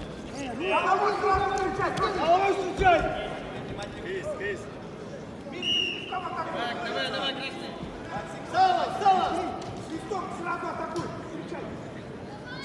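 Indistinct voices echoing through a large sports arena, in bursts, with a brief high tone about six seconds in.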